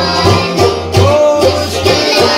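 Children and men singing a devotional ginan together over a drum keeping a steady beat, about two to three beats a second.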